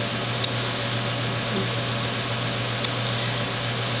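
Steady low mechanical hum with an even hiss of room noise. Two faint ticks come through, one about half a second in and one near three seconds.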